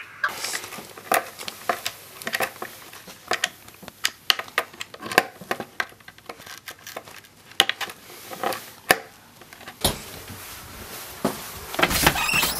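Irregular clicks and knocks of skateboard hardware being handled as a truck with its wheels is fitted to a deck, with one sharper knock near the end.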